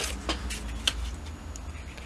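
Plastic model-kit sprue and a sanding stick handled as the stick is brought against the track links, giving a few light clicks near the start and about a second in over faint handling noise.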